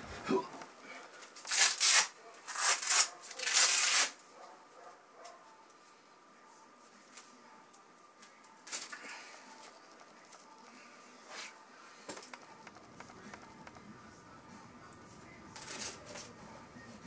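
Rustling and handling sounds of a person moving on a mattress and working his climbing shoes off: three loud rustling bursts in the first four seconds, then faint scattered rustles and taps.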